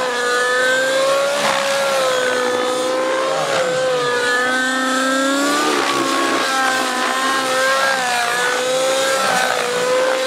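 O.S. 105 two-stroke glow (nitro) engine of a Miniature Aircraft Whiplash radio-controlled helicopter running at high speed, with the whine of its rotor drivetrain. The pitch wavers up and down as the helicopter flips and turns through aerobatic manoeuvres.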